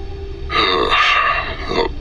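A man's gruff voice drawing out a long hesitant 'uhh… oh'.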